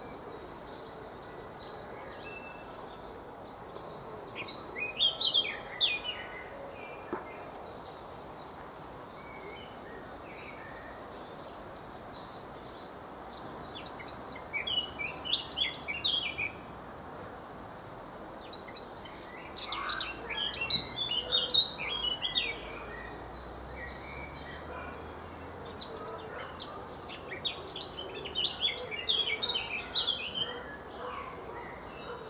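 Songbirds singing in several bursts of quick high twittering phrases, over a steady background hum of distant traffic.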